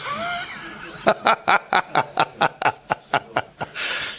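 A man laughing. It starts with a high squeaky rising sound, breaks into a run of about a dozen short, even 'ha' pulses, about five a second, and ends in a breathy exhale.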